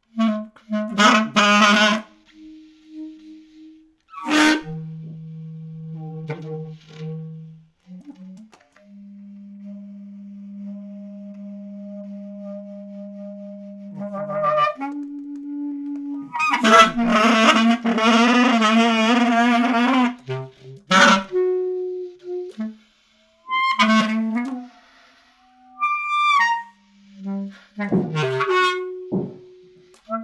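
Solo basset horn playing a contemporary piece full of extended techniques. Long, quiet held low notes alternate with sudden loud, dense outbursts of several sounding pitches that waver and trill, with short clipped attacks and brief silences between phrases.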